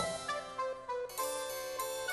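Background music with harpsichord-like keyboard notes, a new chord entering about a second in.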